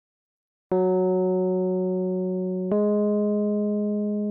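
Two keyboard notes played one after the other as an ear-training interval, each held about two seconds, the second a little higher than the first: a rising interval of a second.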